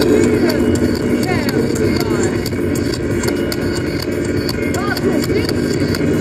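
Live ambient-industrial music: a steady low electronic drone with frequent irregular clicks and several arching, voice-like gliding tones over it.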